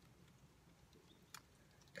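Near silence: faint room tone, with a single faint click a little past halfway.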